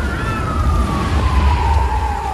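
A siren-like tone gliding steadily down in pitch over a heavy low rumble.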